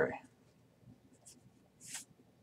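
A man's voice trails off at the start. Then a Magic: The Gathering card is laid onto a stack of cards on a playmat, giving a soft paper swish near the end, with a fainter one before it.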